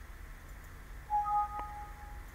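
Windows alert chime of two tones sounding together about a second in, the higher one stopping after half a second while the lower rings on, with a single click partway through. It signals a warning dialog asking to save the part document before a drawing view is inserted.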